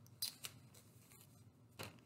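A few faint, short clicks and rustles of a cross-stitch project and its fabric being handled, the last one near the end.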